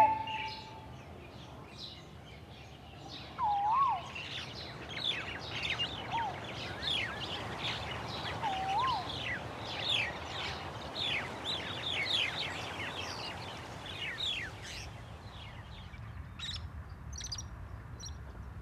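Birds calling: a run of sharp, downward-sliding chirps, about two a second, with a few lower wavy whistles in the first half. The chirps fade out near the end.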